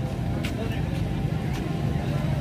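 Motorcycle engine running low and close by, moving slowly through a crowded market street, over background voices; two short clicks about half a second and a second and a half in.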